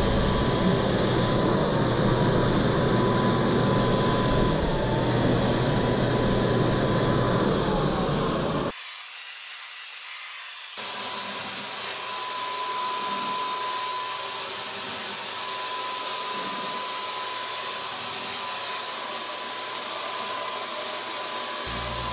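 Wagner Flexio 590 HVLP paint sprayer running while spraying: a steady rushing air hiss from its turbine with a constant high whine. It is louder for the first nine seconds, then breaks off briefly and carries on quieter.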